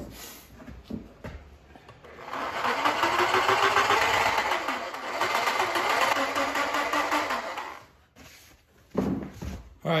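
Homemade power scraper, a reciprocating saw driving a scraper blade, runs for about five seconds from about two seconds in, scraping a lathe compound's way surface to take down its high spots. The motor note rises and dips as the tool works, then stops.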